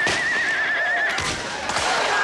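A horse whinnies: one wavering high call lasting about a second. Sharp cracks sound at the start and again later.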